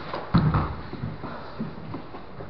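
A thump of grappling bodies hitting the foam mat close by, about a third of a second in. Lighter knocks and scuffing of bodies and cloth on the mat follow.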